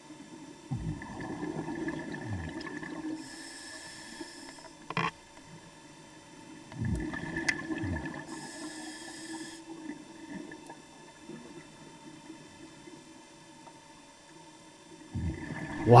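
Scuba diver breathing through a regulator underwater: twice, a low bubbling rush of exhaled air is followed a couple of seconds later by the high hiss of an inhalation. A single sharp click sounds about five seconds in.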